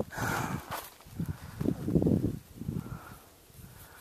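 Irregular footsteps on a rocky, snow-patched trail, quietening in the last second.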